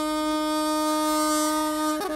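A long bamboo wind pipe holding one steady, reedy note rich in overtones for the whole two seconds.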